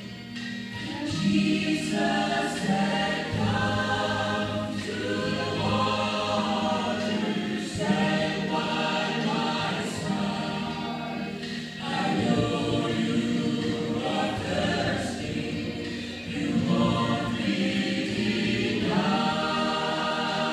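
Three women singing a gospel song together into a microphone, in phrases a second or two long with short breaths between them.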